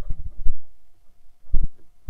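Dull low thuds, several at irregular spacing, of footfalls and bumps on a camera carried while walking through undergrowth.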